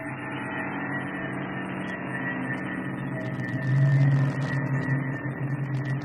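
Music: a droning ambient passage of steady held tones, swelling louder in the low range about four seconds in.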